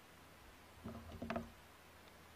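Quiet room tone with a short, faint mutter from a man's voice about a second in.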